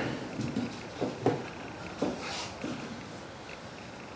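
Handling sounds as hands press an off-road UTV tyre down over wooden blocks to break its bead away from a beadlock rim: a few soft, scattered knocks and rubs in the first few seconds.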